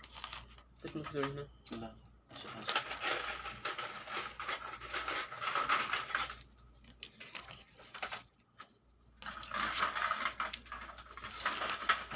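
Gold bangles clinking and jingling against each other as a stack of them is handled, in two long stretches, the second starting about nine seconds in.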